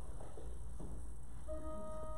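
Church organ starting a hymn introduction with a sustained chord about a second and a half in, over a low steady room hum.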